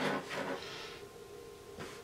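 Faint handling sounds: a brief soft rub, then a single light tap near the end, as a fondant-covered cookie is turned on the work surface and dabbed with a stamping block.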